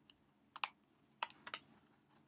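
Clear plastic Blu-ray case being handled and opened: a few light plastic clicks, one pair about half a second in and a cluster around a second and a half in.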